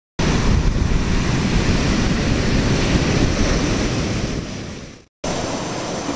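Ocean surf breaking on a beach with wind buffeting the microphone, fading out about five seconds in; after a short gap a quieter, steady hiss takes over.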